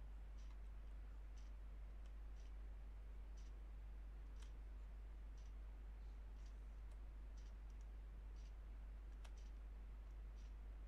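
Faint ticking, about one tick a second, in step with an on-screen countdown timer, over a steady low hum.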